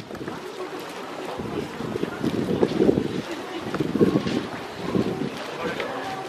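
Wind buffeting the microphone in irregular gusts, with people's voices faintly in the background.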